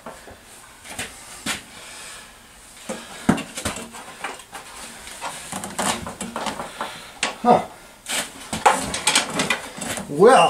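Scattered metallic clicks, clanks and knocks of hand tools and parts being handled against a motorcycle frame, with a few louder knocks spread through.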